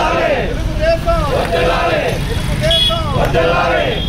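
A group of men shouting political slogans together, one short chant repeated over and over, with a steady low rumble beneath.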